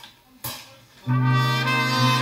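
A live brass band of trumpets, trombones and a sousaphone strikes up about a second in with a loud, held chord.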